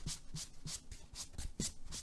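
Hands handling sports cards and their packaging, rubbing and sliding them: a quick run of soft scratchy strokes, about five a second.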